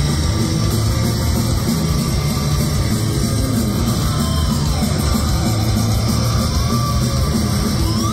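Heavy metal band playing live, loud and dense without a break: distorted electric guitars, bass and drum kit, heard from among the crowd.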